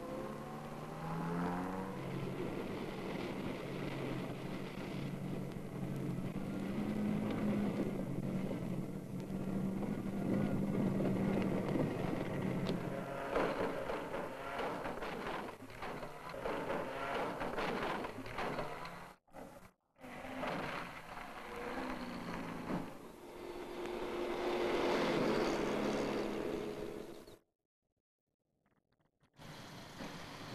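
Small BMC saloon car engines revving hard over rough dirt ground, the engine note climbing and falling as the drivers work through the switchback. In the middle come rattles and knocks as the cars are shaken about on the rutted track.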